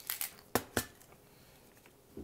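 Handling noise: a handful of short clicks and rustles in the first second as a paper target sheet is lifted and a tin of airgun pellets is moved.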